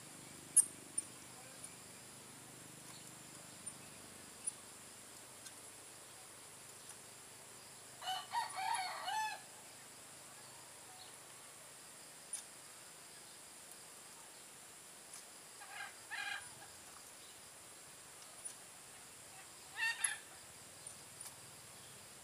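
Faint bird calls over a quiet field: one longer call about eight seconds in, then two shorter ones later, with light scattered ticks and a steady high-pitched hiss underneath.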